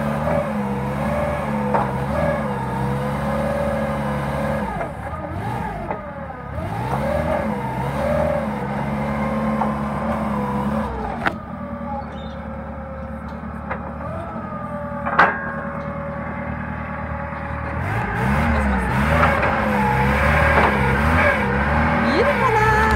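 Nissan FG-series gasoline forklift engine running, revved up and down several times, with a couple of sharp knocks in the middle.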